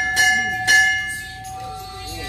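Metal temple bell rung in a puja, struck about three times a second; the strokes stop about a second in and its ringing tone fades away.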